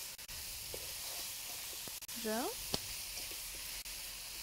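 Chicken thigh, pepper and onion sizzling in a wok on high heat, a steady hiss, while a spatula stirs them, with a few light clicks of the spatula on the pan.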